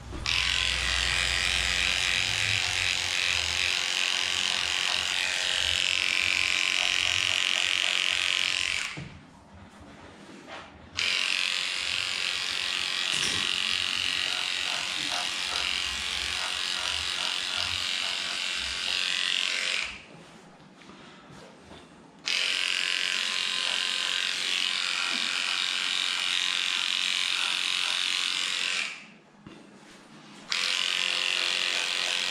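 Battery-powered dog clipper running as it shaves through a cocker spaniel's matted coat: a steady motor buzz that switches off twice for about two seconds and again near the end.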